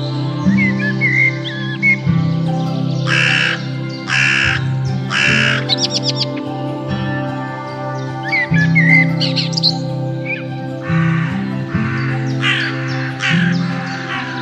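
A crow cawing, three harsh caws about a second apart and later a run of four, over steady background music. Small birds chirp briefly between the caws.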